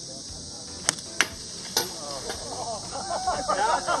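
Three sharp cracks in the first two seconds, one of them a golf iron striking the ball on a low stinger shot. Onlookers then start calling out in reaction near the end, over a steady high insect hiss.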